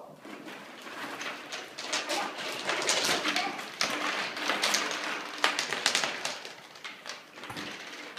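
Plastic bottle caps clattering and clicking against a wooden tabletop and each other as they are tipped out of zip-top plastic bags and spread by hand, with the bags crinkling. The clicks come thick and irregular.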